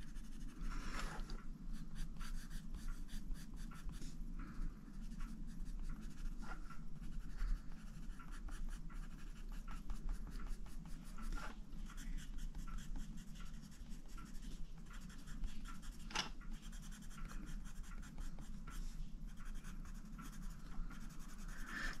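Kelp Green Prismacolor Premier coloured pencil shading on colouring-book paper: a steady run of quick, small scratching strokes.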